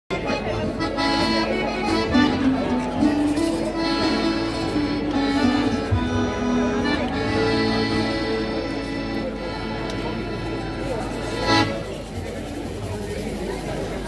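Live folk music on accordion with guitars, played through a loudspeaker. It ends on a final accented chord a little over three quarters of the way through, and the rest is quieter.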